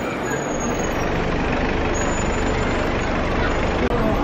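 Street traffic noise with a motor vehicle engine running close by, a steady low hum under the general street din. It breaks off abruptly just before the end.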